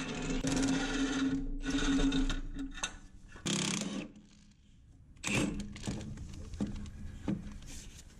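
Cordless impact wrench (Milwaukee M18 Fuel) running on bolts under a car. It runs in one long buzz of about two and a half seconds, then shorter bursts with a brief pause near the middle.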